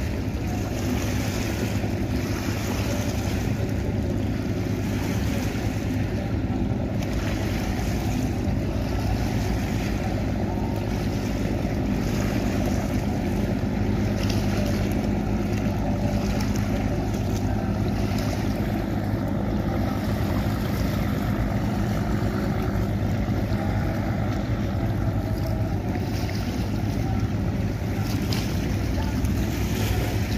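Steady low drone of a passing river express passenger boat's engines, over a wash of wind on the microphone and moving water.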